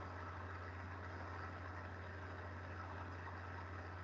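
Steady low hum with a faint even hiss, unchanging throughout: the background noise floor of a computer's microphone recording.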